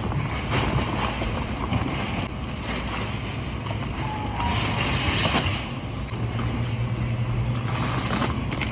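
Plastic packaging and a reusable shopping bag rustling as groceries are packed at a store checkout, with scattered handling clicks over a steady low hum. The rustling is loudest for about a second midway, and a short faint beep comes just before it.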